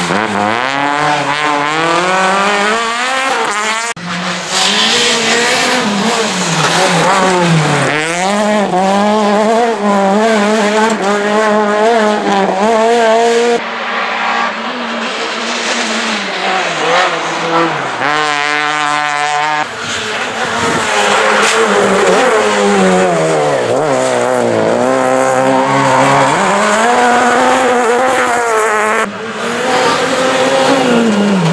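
Rally car engines revving hard, their pitch repeatedly climbing and dropping through gear changes as the cars pass, in a series of short clips that cut about every few seconds.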